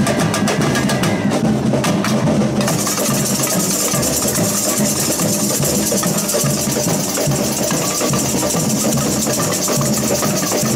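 Samba percussion band (bateria) playing a steady, driving samba groove on bass drums (surdos) and higher drums. A bright shaker rattle joins in about two and a half seconds in.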